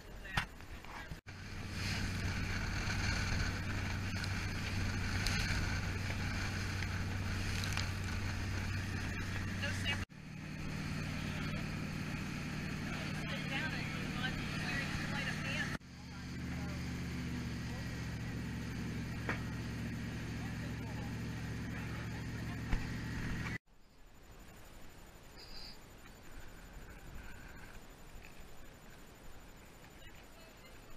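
Motorboat engine running steadily under way with wind and water noise, in three edited stretches, each at a slightly different engine pitch. Near the end it cuts to a quieter stretch with faint voices.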